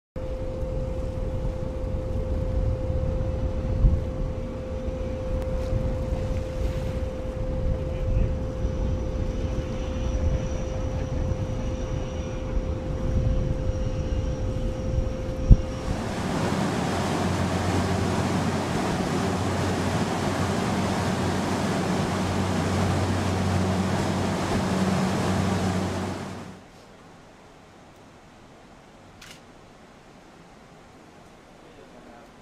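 A high-speed catamaran at sea: at first a heavy, gusty low rumble of wind over the microphone with a steady hum, then from about halfway a dense rush of spray and engine noise over a low hum as the vessel runs at speed. It cuts off abruptly near the end to a much quieter background.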